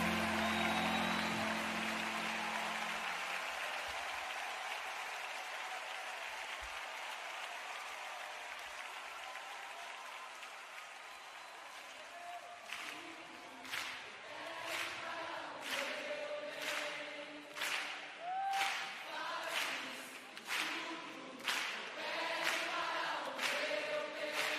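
A worship song's last chord rings out and fades away. From about halfway through, a congregation claps in a steady rhythm, about one clap a second, with voices singing along.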